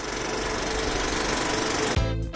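Film projector running with a fast, steady mechanical rattle that stops abruptly at the end.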